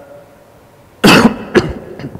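A man coughing twice about a second in, the first cough longer than the second.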